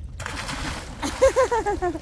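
A person diving headfirst into lake water: a sudden splash just after the start that lasts under a second. About a second in, a short burst of laughter follows, louder than the splash.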